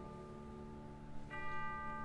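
Orchestra holding a soft sustained chord. A little over a second in, a tubular bell (orchestral chime) is struck once and rings on over it.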